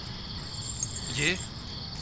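Crickets chirping steadily in a night ambience, with one short spoken word about a second in.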